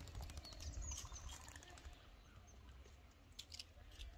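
Faint outdoor ambience: a few short high bird chirps in the first second, scattered light clicks and a low rumble.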